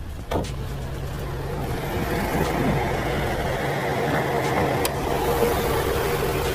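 Audi RS5 Sportback's 2.9-litre twin-turbo V6 idling steadily, the hum growing slightly louder towards the end. A sharp click comes about a third of a second in and another near five seconds.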